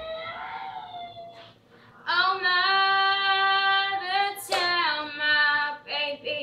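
A ten-year-old girl singing unaccompanied: a rising note, a brief break, then a long steady held note of about two seconds that slides down near the end.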